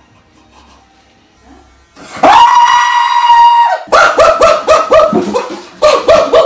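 A man screaming with his feet in a fish pedicure tank: a loud, high-pitched scream held for about a second and a half starting about two seconds in, then rapid short yelps about five a second, his reaction to the fish nibbling his feet.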